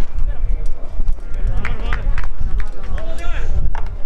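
Several young players' voices shouting high-pitched calls on the pitch as a goal goes in, with a few sharp knocks from the ball. A steady low rumble of wind on the microphone underneath.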